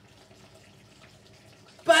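Kitchen tap running into the sink, a faint steady rush of water; a woman's voice starts loudly near the end.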